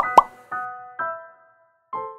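Two quick rising 'plop' sound effects right at the start, the loudest sounds here, over gentle background piano music that pauses briefly before coming back near the end.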